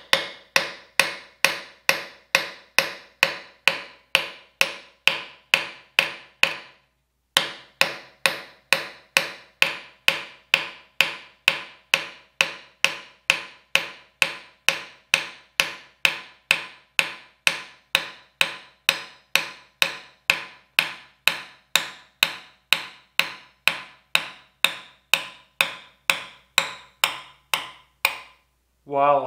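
Ball-peen hammer tapping lightly on the end of a steel knife tang, a steady run of sharp metallic strikes at about two to three a second, each ringing briefly, with one short pause about seven seconds in. The taps are driving the tang down out of a tight-fitting knife guard held on a vise.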